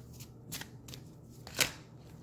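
A deck of oracle cards being shuffled by hand: a few short crisp card sounds, the loudest about a second and a half in.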